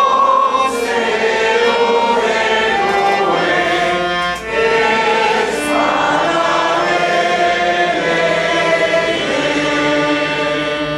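A small group of voices singing a hymn together in held, sustained notes, with a brief break about four seconds in.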